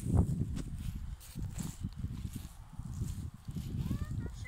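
Footsteps across a dry grass field with irregular low thuds and rumble from the phone microphone being carried and handled, strongest right at the start.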